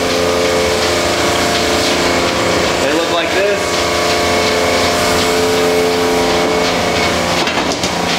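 Lotus Holland automatic screen-reclaiming machine running: a loud, steady wash of machine noise with a constant hum of several tones.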